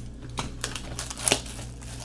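Shrink-wrapped trading card box being handled: a few sharp crinkles and clicks of cellophane and cardboard, the loudest about a second and a half in.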